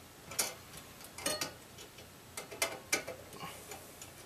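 Screwdriver tip clicking against the metal mounting bracket and screws of a tower CPU cooler: a string of irregular sharp clicks, some in quick pairs and clusters.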